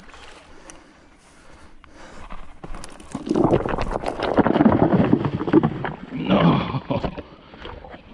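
Loose riverbank rocks clattering and knocking underfoot as someone scrambles down a rocky bank: a dense run of sharp knocks lasting about three seconds, starting about three seconds in, followed by a brief vocal exclamation.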